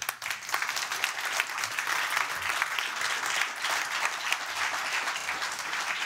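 Audience applauding: many hands clapping at an even level.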